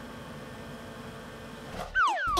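Steady low mechanical whirring, a cartoon sound effect of a workshop vehicle lift carrying the excavator down through the floor.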